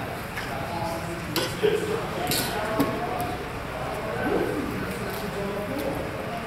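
Practice longswords striking each other a few times, sharp metallic clacks, one near the middle with a short ring, over low background talk.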